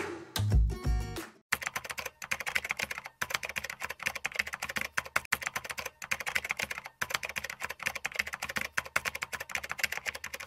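The last notes of background music fade out in the first second or so. Then comes a fast, steady run of computer-keyboard typing clicks, broken by a few short pauses. It is a typing sound effect for text typing itself out on screen.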